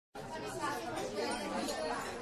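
Indistinct chatter of several voices, with no words that can be made out.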